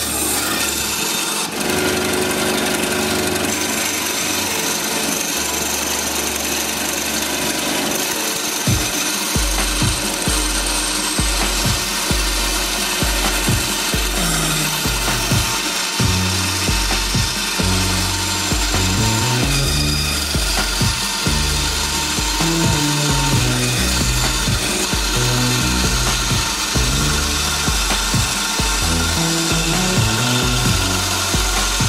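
Small benchtop band saw running and cutting through a thick block of wood along a curve, the blade rasping steadily in the wood. Background music with a stepping bass line comes in about nine seconds in.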